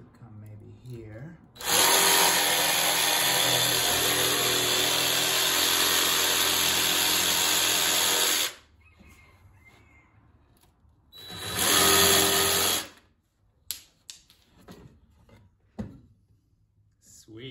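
Jigsaw cutting a thin wooden board, cutting out eye holes. It runs for one long cut of about seven seconds, stops, then makes a second, shorter cut of about two seconds, followed by a few light knocks as the board is handled.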